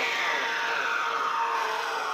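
Psytrance breakdown with no kick drum: a hissing synth sweep falls slowly in pitch.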